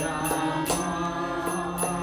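Kirtan: a harmonium held on sustained chords under voices chanting a mantra, with small hand cymbals (kartals) ringing in a steady beat about two to three strikes a second.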